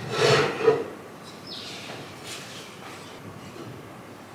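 Decorative ornaments knocking and clunking against a wooden shelf as they are handled and set down, a short clatter in the first second with the sharpest knock just before one second in, then a few faint rustles.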